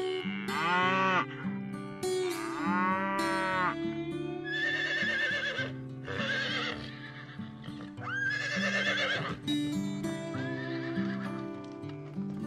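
Horses whinnying about four times with a wavering, quavering pitch, from about four seconds in, over steady background music. Before them come two shorter rising-and-falling animal calls.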